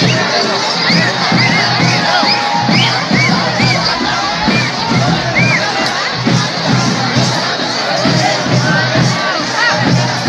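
Large crowd shouting and cheering continuously, many voices calling out at once, with a steady run of low thumps underneath.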